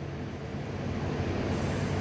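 Steady background machinery hum: a low drone under a rushing noise that grows slowly louder, with a high hiss joining near the end.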